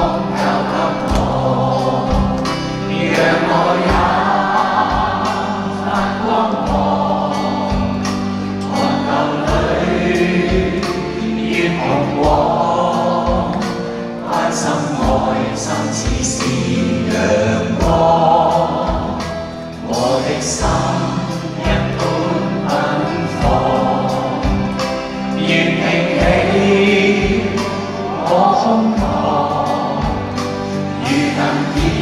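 A man singing a song live into a microphone, backed by a band with a steady beat.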